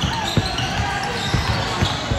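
Basketball being dribbled on a hardwood court: a few short, low thuds at uneven spacing, with people's voices chattering underneath.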